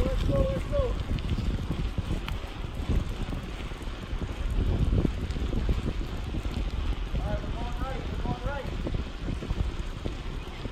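Wind buffeting the microphone over a steady low rumble of wheels rolling along asphalt while moving down the street. A few short chirping calls come in about seven to nine seconds in.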